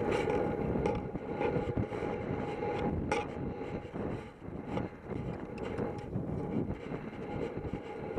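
Wind rumbling on a helmet camera's microphone while a horse moves at pace across grass, with irregular knocks from its hoofbeats and tack.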